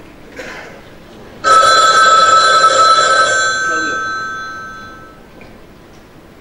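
A telephone ring starts suddenly about a second and a half in, holds steady for a moment, then fades away over a few seconds.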